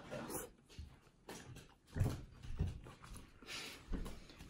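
Faint, irregular chewing and mouth noises from someone eating a forkful of rice.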